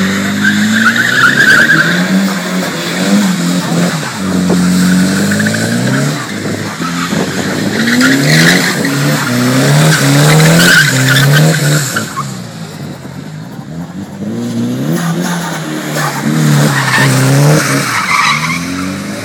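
Nissan 180SX drifting: the engine revs up and down again and again through the slides, with bursts of tyre squeal. It goes quieter for a few seconds about two-thirds of the way through, then builds again near the end.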